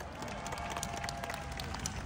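An audience applauding, with many separate hand claps over a low crowd murmur.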